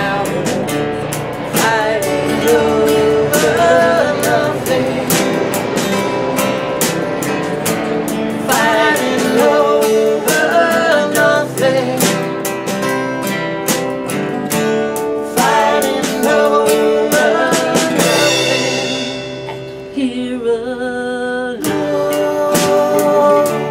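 Live acoustic band: a woman singing over strummed acoustic guitars, with a drum kit and cymbals keeping the beat.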